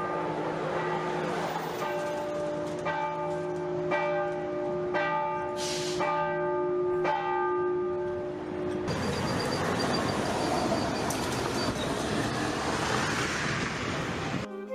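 Bells ringing from a music video's intro soundtrack, a stroke about every second over a steady low hum. About nine seconds in the bells stop and a steady hiss takes over.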